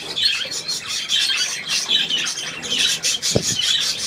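Budgerigars chattering with rapid, continuous chirps. A single sharp knock comes about three and a half seconds in.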